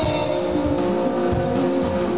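Rock band playing live: electric guitar, bass guitar and drums, sustained chords over a steady drum beat.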